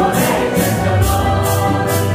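A congregation singing a Santo Daime hymn together, men's and women's voices over a steady instrumental bass. A shaker keeps an even beat of about two or three strokes a second.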